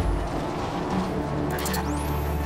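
Film soundtrack music with a low sustained drone. Near the end there is a short cluster of clicks, then a quick rising sweep that levels off into a high tone.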